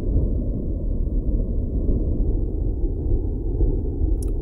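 Steady deep rumble with no clear pitch, an even background sound bed under the earthquake-map animation.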